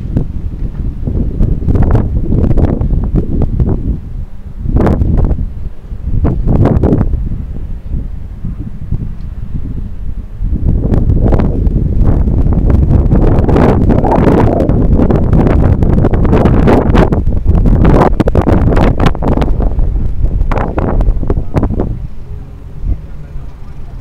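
Wind buffeting the microphone of a bicycle-mounted action camera while riding, a loud, gusty rumble that swells and eases, strongest in the second half.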